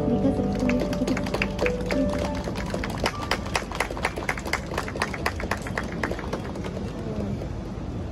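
A small audience clapping, separate handclaps for about six seconds, while the last notes of a song with acoustic-guitar backing fade out near the start.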